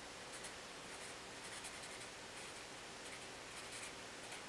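Felt-tip marker writing on paper: faint, short scratchy strokes in small clusters as a word is written.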